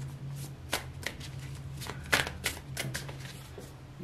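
A deck of tarot cards being shuffled by hand: a string of irregular short card slaps and flicks, a few a second, thinning out near the end.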